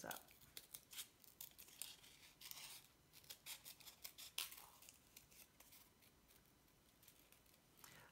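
Scissors snipping through folded corrugated cardboard: a faint run of short, crisp cuts that trails off after about five seconds.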